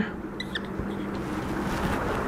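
Whiteboard marker squeaking briefly on the board about half a second in, over steady room noise with a low hum.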